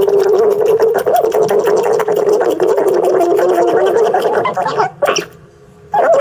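Guinea pig purring: a continuous, rapidly pulsing rumble held at a steady pitch, breaking off about five seconds in.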